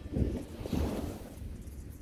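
Wind on the microphone with small waves washing on the beach, loudest in two surges within the first second.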